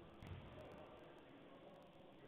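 Near silence: faint room tone, with one brief low thump a quarter second in.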